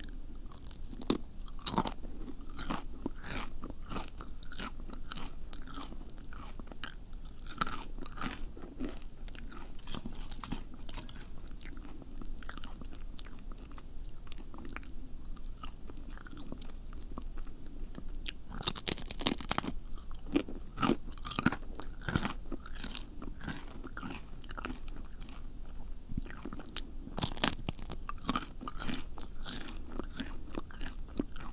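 Close-miked ASMR eating sounds: crunchy biting and chewing heard as irregular crisp clicks and crunches. They come thicker about two-thirds of the way through and again near the end.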